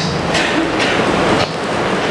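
Steady, loud rushing noise with no clear pattern, with faint traces of a voice underneath.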